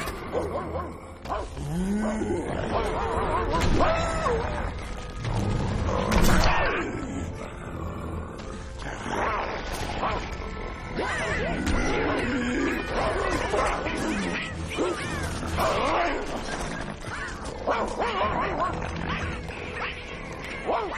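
Film soundtrack: music mixed with cartoon creature cries and squeals that rise and fall in pitch, with several sudden louder action effects.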